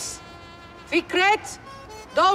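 A woman's short, high-pitched shout about a second in.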